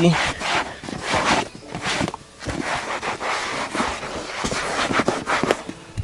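Cloth towel being rubbed over a leather car seat close to the microphone: irregular scuffing and rustling strokes.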